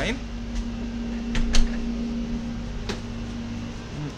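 A steady low mechanical hum, with a low rumble underneath. Two sharp knocks come about a second and a half in and another near three seconds.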